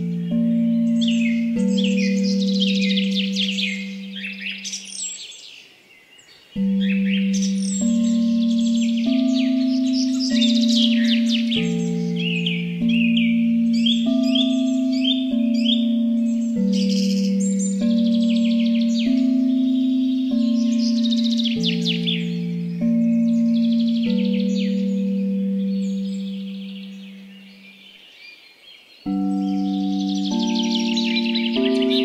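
Tibetan singing bowl tones ring low and sustained, with a new note entering every second or so, over continuous songbird chirping and trills. The bowl ringing fades away about five seconds in and again near the end, and each time new notes come in sharply.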